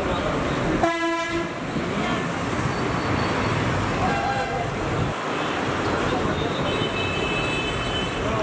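Road traffic noise with a vehicle horn honking once, briefly, about a second in, and a fainter horn about four seconds in.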